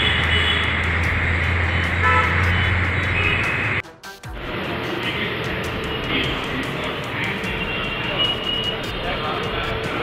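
A vehicle engine running with a steady low hum under a noisy outdoor din. About four seconds in, the sound cuts out abruptly and comes back as a steady noisy rumble with a few short high tones over it.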